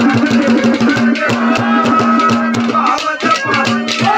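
Live Haryanvi ragni accompaniment without singing: a held drone note and a melody line over fast, steady hand-drum strokes and jingling rattle-like percussion.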